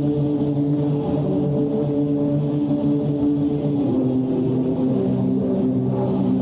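Live heavy metal band holding long, ringing electric guitar and bass chords, stepping down to a lower chord about four seconds in.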